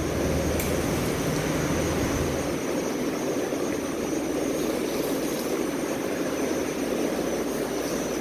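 Steady, even mechanical noise with no distinct events. A low rumble underneath drops away about two and a half seconds in.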